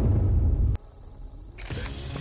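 Edited transition sound effect for a countdown graphic. Loud, dense arena noise is cut off by a sharp camera-shutter-like click, followed by a high, wavering electronic tone.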